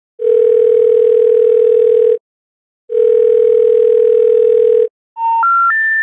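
Telephone line tones: two long, steady, low tones of about two seconds each with a short gap between them, then the three rising special information tones of a telephone intercept. The tones announce the recorded message that the number dialed has been changed.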